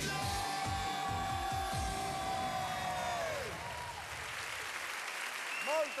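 A live pop dance song ends on one long held note that slides down and fades out, as the beat stops. A studio audience applauds, growing over the last few seconds.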